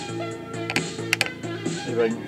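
Music playing from a cassette on a Quasar GX3632 boombox through its newly fitted 4-ohm replacement speakers, which the owner finds a little cleaner. A bass line repeats in short, even notes under a few sharp percussion hits.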